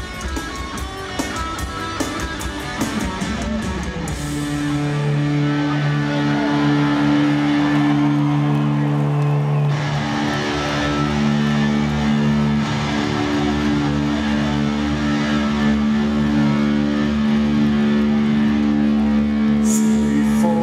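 Heavy metal band playing live with distorted electric guitars and drums, heard from the arena audience. About four seconds in, the band moves into long, held, ringing notes.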